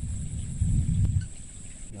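Thunder rumbling low, swelling about half a second in and dying away a little after a second.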